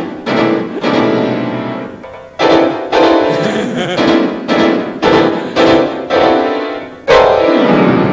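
Grand piano played with loud struck chords at uneven intervals, each ringing and dying away before the next.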